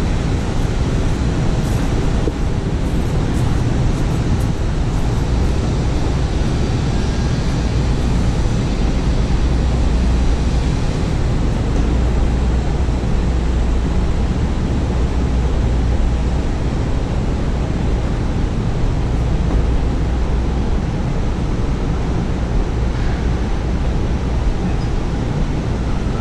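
Steady Manhattan street ambience: an unbroken low rumble of city traffic and street noise.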